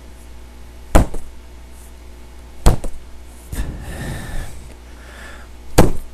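Three sharp strikes landing on a handheld striking pad made from an old chair cushion: one about a second in, one a little under three seconds in, and one near the end, with a softer rustle or breath between the second and third.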